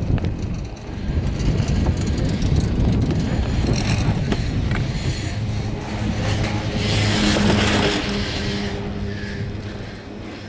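Riding a high-speed chairlift: a low rumble with wind on the microphone, then from about six seconds in a steady hum with a clear pitch as the chair passes a lift tower and runs over its sheave wheels, fading near the end.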